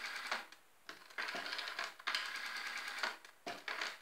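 Rotary telephone dial being turned and let spin back, over and over: each return is a quick run of rapid clicks, short for some digits and about a second long for one, as a number is dialed digit after digit.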